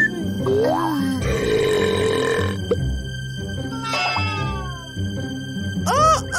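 Cartoon burp sound effect lasting about a second, over light background music, followed a little later by falling, whistle-like cartoon sound effects.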